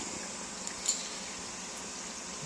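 Steady watery hiss of a running aquarium filter, with a faint tick a little before a second in.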